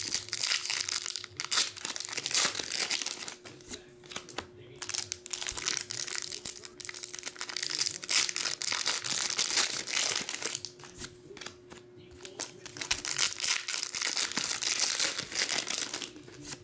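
Foil Pokémon booster-pack wrappers crinkling and tearing as packs are opened by hand, with cards handled in between. The crackling is dense and irregular and eases off twice, about a third of the way in and again about three-quarters through. A faint steady hum runs underneath.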